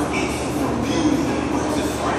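Large drum fan running: a steady rushing noise with a low, constant hum.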